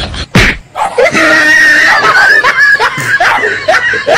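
A sharp knock about half a second in, then a loud, high-pitched wavering scream that runs for about two seconds and breaks into shorter cries near the end.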